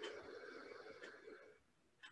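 One slow, deep breath, faint, that fades out about one and a half seconds in.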